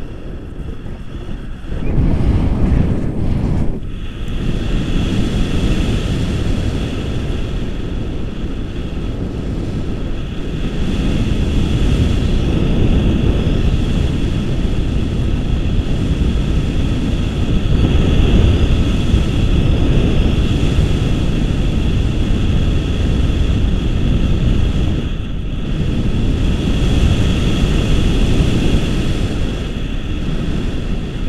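Wind buffeting a camera's microphone in tandem paraglider flight: a loud, continuous low rumble of rushing air that rises and falls in gusts, with a thin steady whine above it from about four seconds in.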